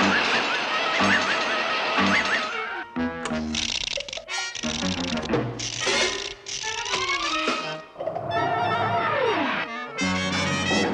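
Cartoon orchestral score with brass and woodwinds, mixed with sound effects. Regular knocks come about once a second at the start, more clatter follows in the middle, and sliding pitches rise and fall, with one long falling glide near the end.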